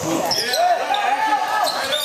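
Sounds of an indoor basketball game in a large, echoing gym: players' and spectators' voices in the background over the noise of play on the court.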